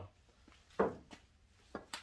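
A short knock about a second in and a sharp click near the end, from a cue ball and cue being handled at a pool table.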